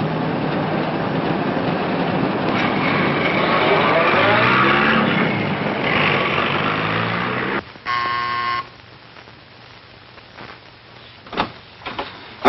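City traffic noise with a car engine whose pitch rises and falls, ending abruptly. A door buzzer then sounds once for just under a second, followed by a quieter room with a couple of faint clicks.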